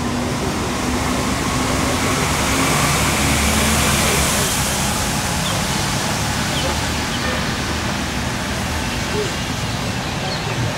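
Steady outdoor background noise with a low hum of road traffic, swelling a little in the middle, and indistinct voices underneath.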